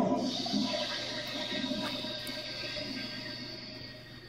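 A cartoon soundtrack playing from a television speaker: a sudden loud swell of rushing noise mixed with music that fades away gradually over about four seconds.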